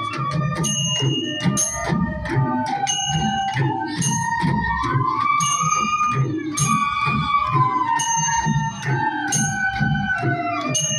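Ensemble of Newar dhime drums beating a steady rhythm under a bansuri flute melody that rises and falls, with short bell-like ringing strikes repeating over the beat.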